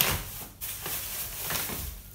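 Thin plastic produce bag rustling and crinkling as it is handled and lifted from the counter, with a faint knock or two.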